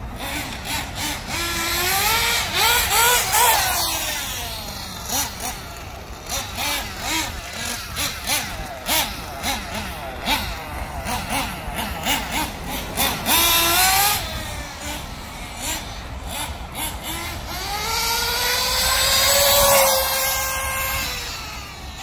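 Nitro RC buggy's small glow-fuel engine running and revving up and down as the car drives. It gives high rising whines about three seconds in and again near fourteen seconds, then a longer climb around eighteen to twenty seconds in that drops away.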